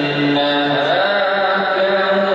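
A male voice reciting the Quran in melodic tilawah style, holding long notes and moving to a higher pitch about a second in.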